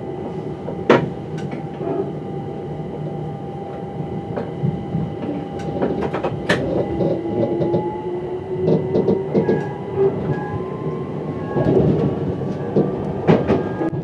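Electric multiple unit heard from the driver's cab, running along the track with a steady rumble and scattered clicks and knocks as the wheels cross junction pointwork. A thin whine rises slowly in pitch through the second half.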